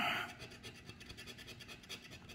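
A plastic scratcher coin scraping the coating off a lottery scratch-off ticket in quick, soft, repeated strokes.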